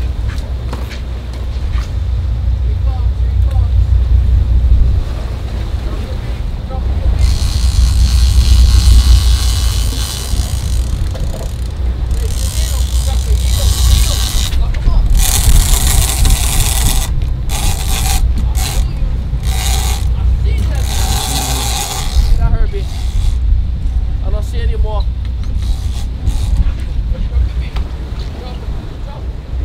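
Sportfishing boat under way at sea: a steady low rumble of engine and wind on the microphone, with long surges of rushing hiss about seven seconds in and again from about twelve to twenty-two seconds.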